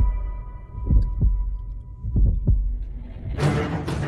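Trailer soundtrack: low heartbeat-like double thumps, two pairs about a second apart, under a held drone tone. Fuller music comes in near the end.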